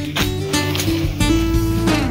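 Background music led by a strummed acoustic guitar, with a steady run of plucked notes.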